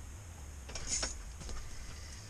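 Spinning reel on a short ice-fishing rod cranked in a brief whirring rasp a little before the middle, followed by a few faint clicks of rod and reel handling, as a hooked fish is reeled up, over a steady low hum.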